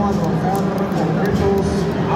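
Stadium crowd of football fans in the stands, many voices singing and shouting together in a steady, loud chant.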